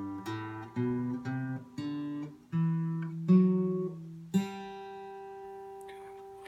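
Acoustic guitar playing the G major scale one note at a time, climbing step by step to the upper G. The top G is left ringing for about two seconds.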